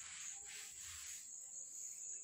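Faint, steady high-pitched trill of crickets over a low background hiss.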